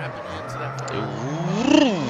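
A drift car's engine faltering as it dies at the end of a run: a low steady drone, then one rev up and back down with the clutch in, the power not coming back.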